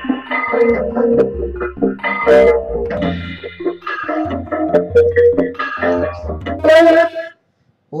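Korg Wavestation software synthesizer played from a Casio keyboard over MIDI, on its 'Ski Jam' performance: layered synth chords over a deep bass line, stopping abruptly about seven seconds in.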